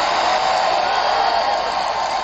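A large crowd cheering and shouting, a steady wash of many voices.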